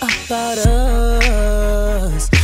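R&B music: a held melodic note over a deep bass line that comes in just under a second in, with sharp drum hits about a second apart.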